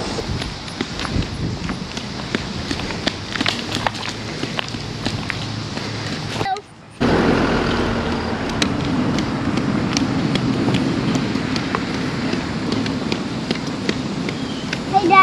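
Outdoor walking sounds: footsteps with scattered small clicks and ticks along a sidewalk. After a brief dropout about six and a half seconds in, footsteps crunch steadily on a gravel driveway.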